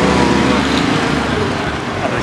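Street traffic: a motor vehicle's engine running close by over a steady low rumble, with an auto-rickshaw pulling in near the end.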